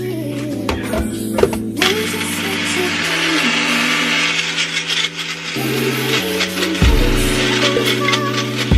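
Background music plays throughout. For a few seconds in the middle, a Magic Bullet blender runs in short bursts, grinding clumpy brown sugar, with clicks as the cup is pressed onto the base.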